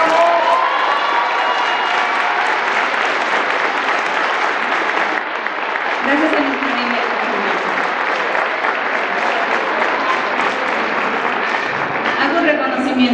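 Audience applauding steadily, with a few voices calling out through the clapping.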